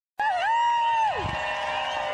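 A single high whoop held for about a second and then dropping away, over a crowd cheering.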